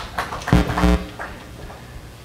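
A man's short wordless vocal sound on one held pitch, lasting under half a second, followed by low room noise.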